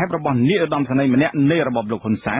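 A man's voice reading a Khmer radio news report, continuous and narrow-sounding, as a radio broadcast is.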